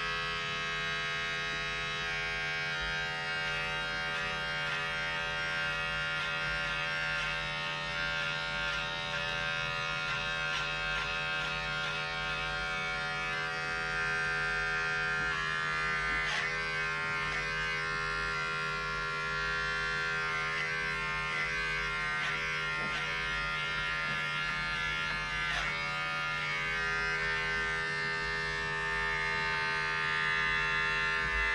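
Corded electric hair clipper running with a steady buzz as it is worked through short hair, getting slightly louder about halfway through.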